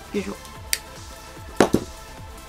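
Nippers snipping thin stainless-steel wire: a small sharp click just under a second in, then a louder double snap about a second and a half in. Background music plays throughout.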